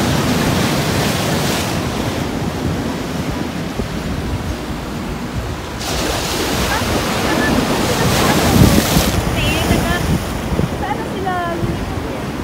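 Ocean surf breaking and washing over a rock shelf, a continuous rush that swells loud twice, the second surge the loudest, about two-thirds of the way through.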